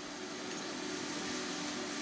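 A steady low background hiss with a faint hum.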